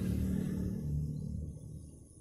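A low engine hum, steady in pitch, fading away over the two seconds.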